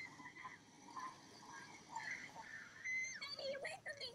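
Faint, distant-sounding shouts from a TV drama's soundtrack: a child calling "Daddy!" and a woman crying out "No, no, no!" in short, high, strained cries.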